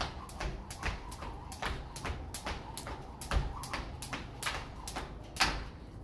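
A jump rope slapping a concrete floor as it is turned backwards, with sneakers landing: an even run of sharp taps about three a second, one a little louder near the end.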